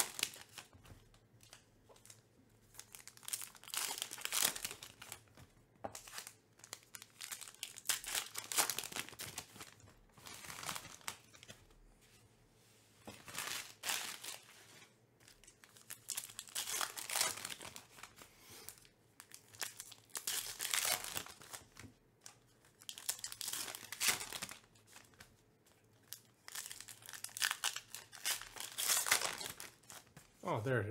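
Baseball card pack wrappers being torn open and crinkled by hand, in repeated bursts every few seconds as pack after pack is opened.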